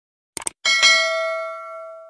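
Three quick mouse-click sound effects, then a small notification bell dings twice in close succession and rings on, slowly fading.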